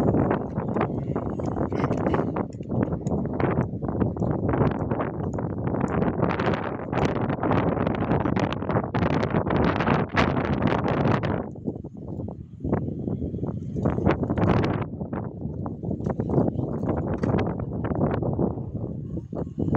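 Wind buffeting the phone's microphone in loud, irregular gusts, heaviest in the low rumble, easing somewhat in the second half.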